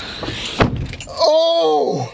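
Handling noise inside a car cabin with a single sharp thump about half a second in, like a car door shutting. Then, from about a second in, a man makes one drawn-out vocal sound that rises and falls in pitch.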